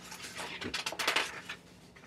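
Paper pages of a picture book rustling and crackling as the book is lowered from the camera and its page turned, in a quick run of short rustles.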